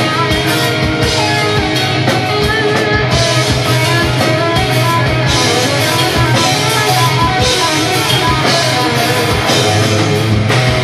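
Death metal band playing live and loud: distorted electric guitars over a drum kit with steady drum hits and cymbal crashes.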